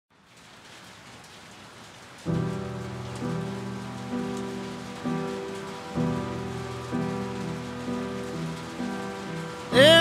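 Heavy rain beating on a roof, with a piano coming in about two seconds in, playing slow chords about once a second. A voice starts singing right at the end.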